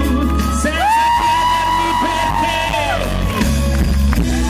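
Live pop song: a male singer, accompanied by acoustic guitar, holds one long high note from about a second in until about three seconds in.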